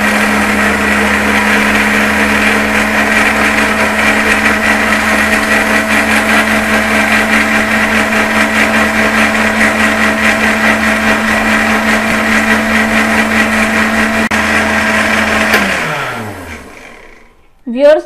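Electric countertop blender running steadily at high speed, whirling eggs, sugar and oil into a liquid batter in its glass jar. About fifteen seconds in it is switched off and its motor winds down with a falling whine.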